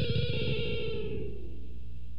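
A held electric guitar note sliding down in pitch and fading away as the song ends, over a steady low hum.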